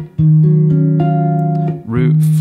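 Hollow-body archtop electric guitar played fingerstyle on an E flat minor nine chord: the previous chord is cut off, a bass note is struck, and the upper chord notes are added about half a second and a second later, all ringing together.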